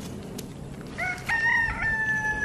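Rooster crowing: one long call starting about halfway through, a short rise into a long held note.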